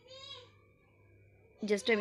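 A brief, faint, high-pitched vocal call at the very start, lasting about half a second, with its pitch rising slightly and then falling.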